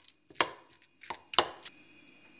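A metal spoon mashing boiled cauliflower in a glass bowl gives a few sharp clinks as it strikes the glass.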